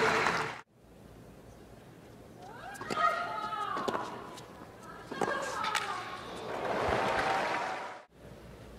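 Tennis rally: a racket strikes the ball on Sabalenka's serve with a loud pitched grunt about three seconds in, and a second racket strike with another grunt follows about two seconds later. A stretch of crowd noise comes near the end.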